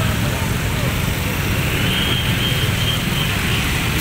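Motor-scooter traffic crawling in a jam: a steady low engine rumble from many idling and creeping scooters, with a faint high-pitched tone in the middle.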